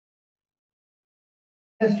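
Dead silence with no sound at all, then a man starts speaking just before the end.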